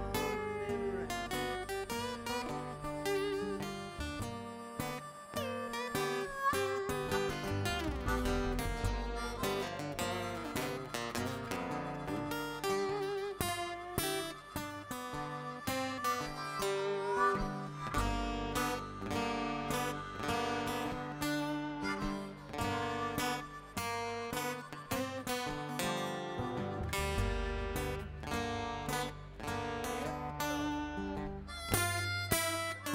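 Acoustic guitars strumming and picking in an instrumental passage of a live song, with no singing.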